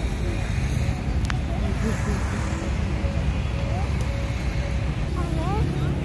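Steady low rumble of outdoor background noise. A faint voice joins near the end.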